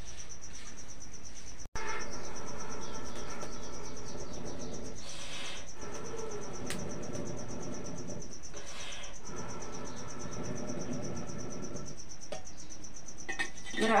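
Insects chirring, a steady high-pitched buzz that runs on under a low steady hum. Two soft rushes of noise come around five and nine seconds in, and the sound drops out for a moment just under two seconds in.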